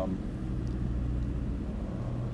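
A steady low mechanical rumble with a constant hum.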